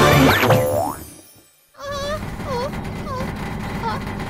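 Cartoon soundtrack: the music ends with springy, rising boing-like sound effects, then a brief near-silent gap about a second in. After the gap comes a steady low rumble with a few short swooping tones.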